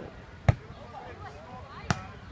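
A volleyball being struck by players' hands and forearms: two sharp slaps about a second and a half apart, with voices in the background.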